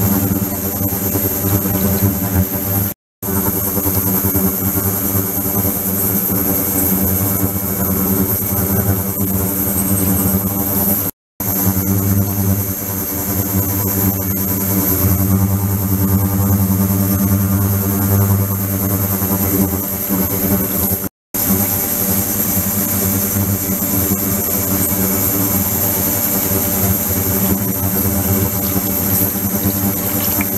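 Ultrasonic cleaning tank and its liquid-circulation pump running with a steady buzzing hum made of many evenly spaced tones, under the splash of the circulating water pouring into the bath. The sound cuts out for a moment three times.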